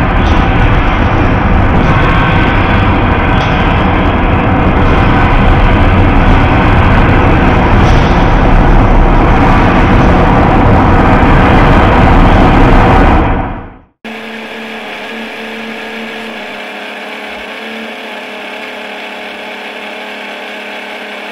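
Loud, sustained wash of distorted guitar and cymbal noise from a live metal band ending a song. It fades out about thirteen seconds in and gives way to a steady hum and hiss.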